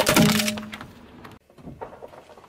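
Car tyre rolling over and crushing a small yellow Pikachu toy: a loud crackle with a brief squeal in the first half second, then dying away.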